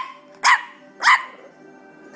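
Boston Terrier puppy barking: three short, sharp barks about half a second apart, each rising in pitch.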